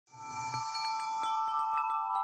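Chiming intro sting: several bell-like tones ringing together over a high shimmer, with light tinkling strikes a few times a second.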